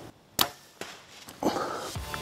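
A compound bow shot: one sharp crack of the released string about half a second in. A few faint clicks follow, then a louder rustle near the end as the arrow-hit whitetail buck bolts through dry leaves.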